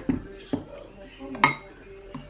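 Tableware clinking: three sharp knocks of dishes and cutlery, the loudest about one and a half seconds in.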